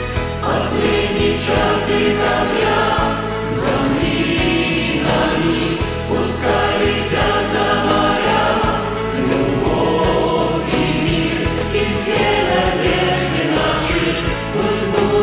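Mixed choir of men and women singing a Russian New Year pop song over an instrumental backing; the voices are separately recorded home takes mixed together into one choir sound.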